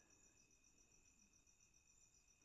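Near silence, with a faint, high-pitched pulsing chirp repeating about seven times a second in the background.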